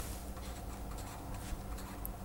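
Faint scratching of a felt-tip marker pen writing figures on paper, with small taps as the pen lifts and touches down.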